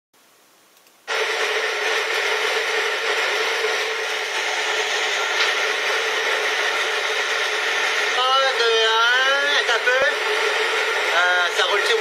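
Steady rush of air blowing up from a sidewalk ventilation grate, starting suddenly about a second in and running on evenly. A voice calls out twice over it in the second half.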